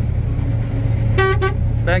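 Combine harvester running while it cuts barley, heard from inside the cab as a steady, loud low drone. A little after a second in, two brief high tones sound over it.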